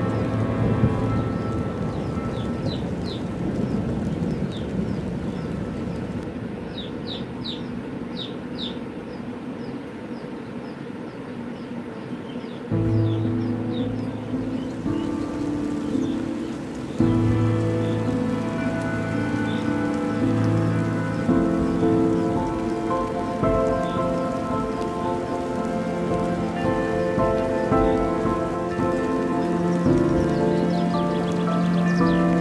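Rain-like hiss with calm ambient music: a few short high chirps in the first third, then sustained layered synth chords coming in about halfway through and carrying on over the rain.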